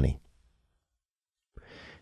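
A man's voice trails off, then near silence, then a faint breath drawn in near the end just before he speaks again.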